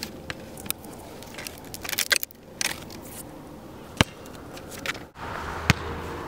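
Skateboard wheels rolling on asphalt, with a few sharp clacks of the board and a louder burst of clattering about two seconds in.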